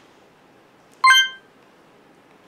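A single short, high electronic beep about a second in, over faint room tone.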